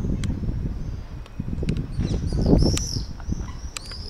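A few high bird chirps, the clearest about two and a half seconds in and again near the end, over an uneven low rumble on the camera microphone.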